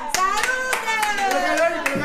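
Hand clapping in a rough rhythm, about three claps a second, with a voice singing or calling out in long gliding notes.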